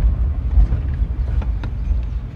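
Road and engine rumble inside a moving vehicle's cabin, a steady low drone, with a few faint ticks.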